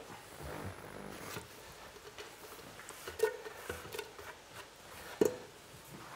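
Two light metallic clinks with a brief ring, about three and five seconds in, from a stainless-steel pot and the metal utensil set in it being handled on a hob, over quiet kitchen room sound.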